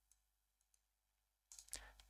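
Near silence with a few faint computer mouse clicks in the first second, then faint noise near the end.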